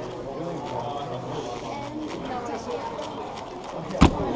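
Quick clicking of a Shadow M 6x6 speedcube's plastic layers being turned fast during a solve, over a steady murmur of voices in a large hall. At the very end comes one sharp knock as the cube is put down and the timer pad is struck to stop it.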